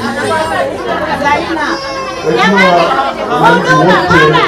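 Crowd chatter: many people talking over one another, several voices overlapping at once, growing louder about halfway through.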